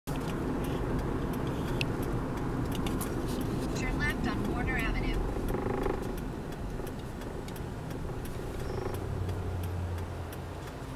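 Steady road and engine rumble heard inside a moving car's cabin. A brief voice comes in about four to five seconds in, and there are scattered light clicks.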